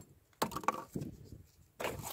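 Folding knife's D2 drop-point blade cutting cardboard: a few short, faint scrapes as the edge slices through.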